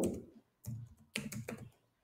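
Computer keyboard typing: a few separate keystrokes at an uneven pace.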